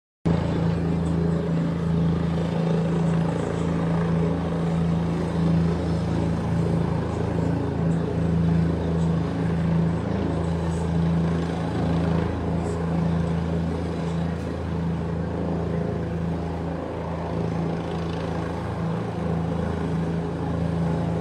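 Helicopter hovering nearby, its engine and rotors making a loud, steady, unbroken low hum.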